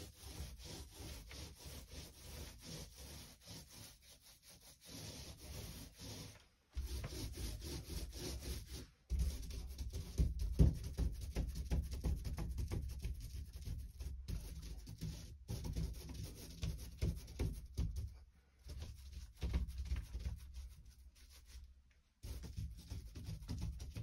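A 4-inch microfiber paint roller rolling wet paint onto a six-panel door in repeated back-and-forth strokes, a steady rubbing sound with short breaks between passes.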